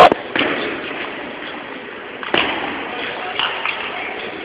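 Table tennis ball knocking on the bats and table: a few separate sharp knocks, the first about half a second in and another near two and a half seconds, over the murmur of a hall crowd.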